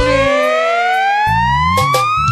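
Siren-like electronic riser in a forró track: one tone sweeps steadily upward in pitch while the drums drop out. The bass and drums come back in about two-thirds of the way through.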